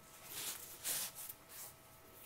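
Corset laces being tugged through the eyelets of a satin corset: soft swishing and rustling of cord on fabric, with two short swishes about half a second and a second in.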